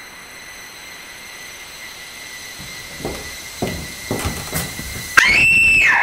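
A steady high whine over a faint hiss, then a few sharp knocks between about three and four and a half seconds in. Near the end comes the loudest sound, a shrill squeal that glides up and holds for most of the last second.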